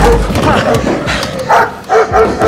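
Dogs barking, with a man's voice among them.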